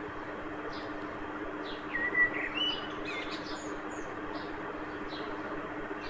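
Small birds chirping, a few short calls with the clearest chirps about two seconds in, over a steady low hum and background hiss.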